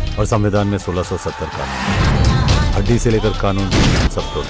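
A Bollywood film song snippet: singing over a music backing with strong bass.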